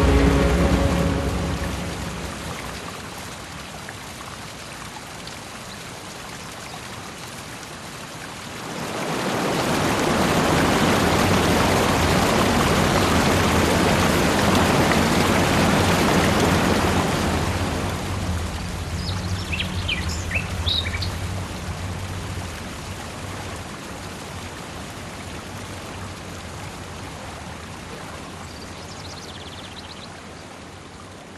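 A tall waterfall pouring over rocks, a steady rush of water that swells louder about a third of the way in and eases after the middle. A few short bird chirps come a little past the middle.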